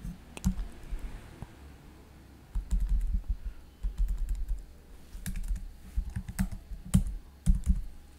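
Computer keyboard being typed on in quick runs of keystrokes, with a few sharper single key strikes near the start and near the end.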